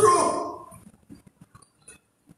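A man's voice over a microphone finishing a word and trailing off within about half a second, then faint scattered clicks.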